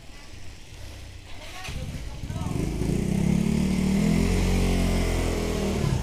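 A small motor scooter engine running. It grows louder about two seconds in, then holds a steady drone.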